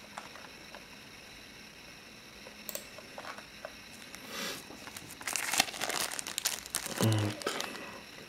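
Clear plastic wrapping crinkling as fingers turn a coin sealed inside it. The crinkling starts after a quiet opening and grows denser and louder in the second half.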